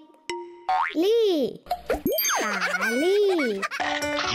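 Cartoon sound effects over children's music: a springy boing that rises and falls in pitch about a second in, then a longer sliding, wavering tone, with a voice sounding out the syllable 'lii'.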